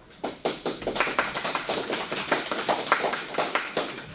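People applauding, a dense patter of hand claps that starts about a quarter second in and stops just before the end.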